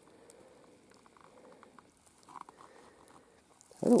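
Faint, scattered light crunching and rustling of footsteps on dry forest ground, a little louder about halfway through.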